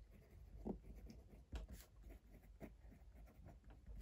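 Faint scratching of a fine-tip pen writing on lined notebook paper, in a run of short strokes as words are written out.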